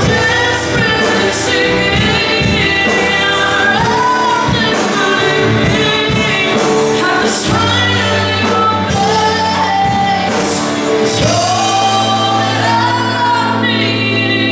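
Live worship band playing a slow song with singing over it: electric guitars, keyboard and a drum kit with cymbals, sung melody rising and falling over sustained low notes.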